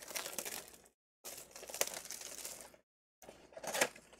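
Plastic shrink-wrap crinkling and tearing as it is pulled off a cardboard trading-card box, in three bursts with short pauses between them.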